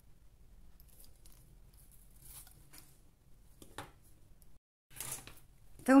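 Faint handling sounds of fingers working a cold-porcelain clay figurine: light rustles and small clicks, with one sharper click a little before the four-second mark.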